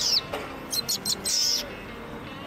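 A bird chirping high and sharp: a falling whistle at the start, a quick run of about four short chirps just before a second in, then another longer falling chirp.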